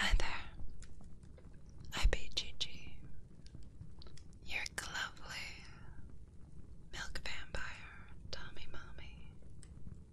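Soft close-microphone whispering in several short phrases, with a sharp click about two seconds in.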